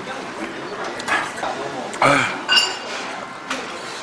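Close-up eating sounds: slurping and chewing of a noodle-and-meat stew, with a short ringing clink of a metal utensil against a stainless steel bowl about two and a half seconds in.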